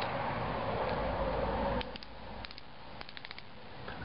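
Plastic cap of a pill bottle dispenser being unscrewed: a rasping scrape for nearly two seconds, then a few light plastic clicks.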